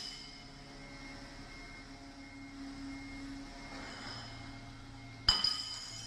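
A sharp clink that rings on briefly at a high pitch, about five seconds in, over a faint low hum.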